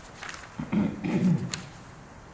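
A man clearing his throat: a low, rough rasp lasting under a second, midway through, followed by a short sharp click.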